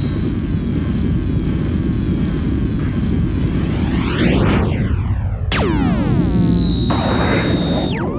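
Synthesized spacecraft take-off sound effect: a steady low rumble under electronic tones that swoop down in pitch over and over. About five and a half seconds in, a sharp high tone drops and then holds steady to the end.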